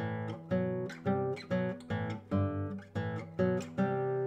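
Nylon-string classical guitar playing a slow run of plucked two-note intervals, about two a second, each left to ring. The intervals are parallel fifths.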